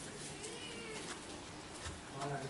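A cat's faint meow: one short call that rises and falls in pitch, about half a second in.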